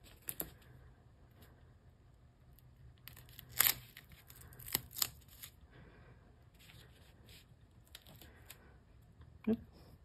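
Faint rustling of paper and plastic being handled, with a few short crackles. The loudest crackle comes a little over three seconds in and two more about five seconds in. These are the sounds of adhesive backing being peeled from foam dimensionals.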